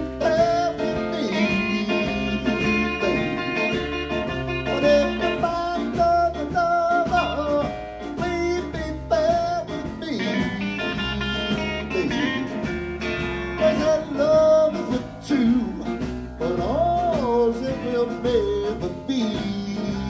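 Live electric blues band mid-song: an amplified harmonica played through a cupped hand-held microphone wails and bends notes over electric guitar, upright bass, drums and keyboard.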